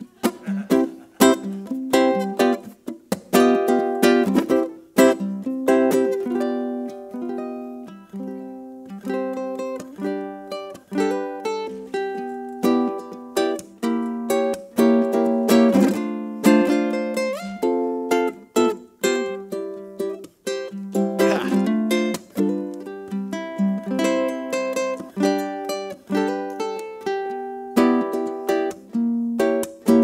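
Solo ukulele played as an instrumental, without singing: a quick run of plucked melody notes and chords, each note sounding sharply and dying away.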